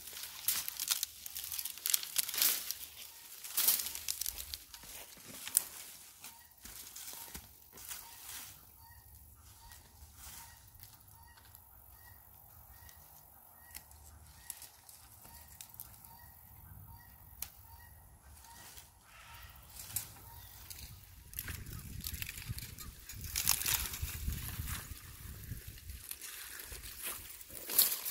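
Dry, dead tomato vines and wire tomato cages crackling and rustling as they are pulled up and dragged. The noise is strongest in the first few seconds and again near the end. Through the quieter middle stretch a bird calls over and over, about twice a second.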